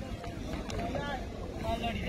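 Wind rumbling on the phone's microphone, with distant people's voices and a brief call about a second in.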